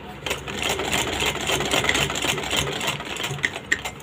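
Singer sewing machine stitching at a steady rapid pace, its needle mechanism clattering, starting just after the beginning and ending in a few separate clicks as it slows near the end.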